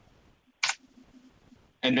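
A single short, sharp click a little over half a second into a quiet pause: a computer mouse click advancing a presentation slide.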